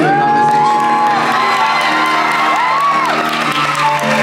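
Female singer holding long, high wordless notes that slide up and arch back down, over piano accompaniment.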